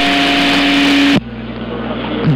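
CB radio receiving AM on channel 6 (27.025 MHz): loud static hiss with two steady tones as a station's carrier comes through unmodulated. It cuts off sharply about a second in, leaving a quieter, duller noise with a low steady hum.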